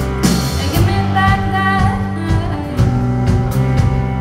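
Live indie rock band playing through the PA: electric guitars, bass and drum kit in a steady full-band groove.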